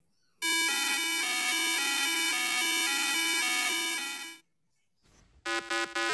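A vehicle horn held in one steady, buzzy tone for about four seconds, the ambulance's horn. Near the end a rapid choppy tone that steps in pitch starts up.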